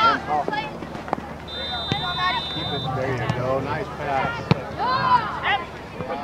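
Indistinct voices of spectators and players calling out across an outdoor soccer field, with a steady high whistle blast of over a second starting about one and a half seconds in, and a few sharp knocks.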